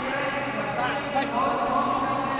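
Indistinct voices of several people calling out from the sidelines, one call held longer in the second half.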